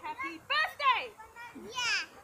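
Young children's high-pitched voices calling out and squealing while playing, with loud sweeping cries about halfway through and again near the end.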